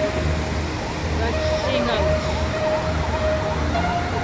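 Floodwater rushing over an overflowing weir in a steady roar, with a low rumble. From about a second and a half in, an emergency-vehicle siren wails, rising and falling quickly and repeatedly.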